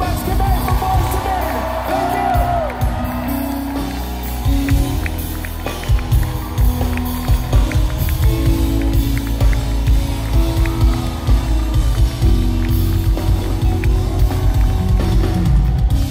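Live band playing an outro: heavy bass and drums under held keyboard chords, with a voice sliding up and down over the first few seconds. The crowd claps and cheers along.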